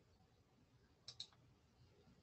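Near silence with two quick clicks in close succession about a second in.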